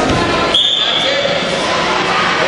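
Referee's whistle: one short, steady, shrill note blown about half a second in, stopping the wrestling on the mat.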